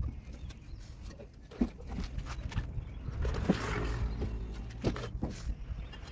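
Bricklaying at a red-brick wall: scattered light knocks and taps of brick and trowel, with a short scraping sound about halfway through, over a steady low rumble of wind on the microphone.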